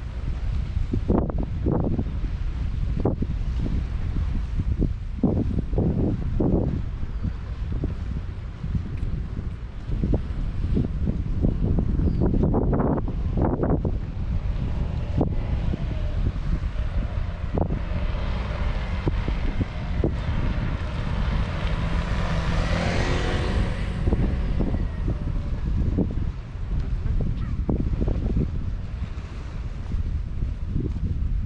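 Wind buffeting an action camera's microphone in a steady low rumble, with scattered short knocks. About two-thirds of the way through, a broader rushing swell builds and fades.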